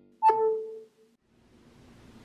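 A short electronic tone, a brief high note falling to a lower note that rings for about half a second and fades, followed by a faint steady hiss.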